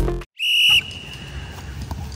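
Electronic background music cuts off, and after a brief silence a single short, steady, high-pitched whistle blast sounds about half a second in, leaving only faint outdoor background.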